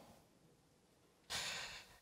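A man's breath, a short noisy intake or sigh picked up close on a headset microphone, starting about a second and a half in after a near-silent pause.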